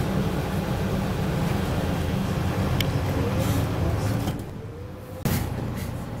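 Mercedes-Benz Citaro bus heard from inside at the front as it pulls away under power, with a faint rising whine over the engine. After about four seconds the engine note drops, and a sudden short loud burst of noise follows a second later.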